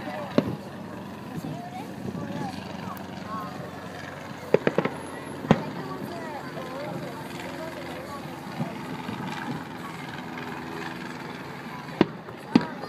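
Fireworks bangs over people chatting: a sharp crack about half a second in, a quick cluster of three about four and a half seconds in, and a louder one about a second later.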